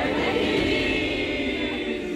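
A group of people shouting together in one long, drawn-out cheer, many voices at once.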